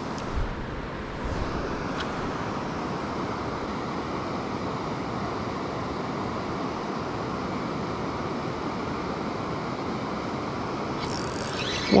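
Steady, even rush of water from river rapids, with a few low bumps in the first second or so.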